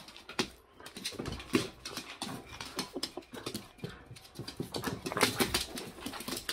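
A small dog's excited noises while playing with a plush toy, over quick scuffling and clicking throughout.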